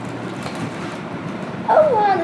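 Soft rustling of a clear plastic bag as a paper photo prop is drawn out of it, over a steady room hum. Near the end comes a short, high-pitched vocal exclamation that falls in pitch.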